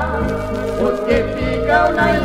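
Music from a Brazilian gospel LP track: a melodic line with vibrato over repeated bass notes, with no words sung in this passage.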